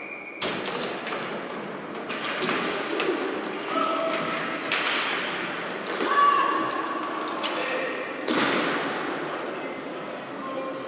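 Roller hockey play in a sports hall: hockey sticks clacking and thudding against each other and the floor, with scattered shouts, all echoing in the hall. A louder single knock with a long echo comes about eight seconds in.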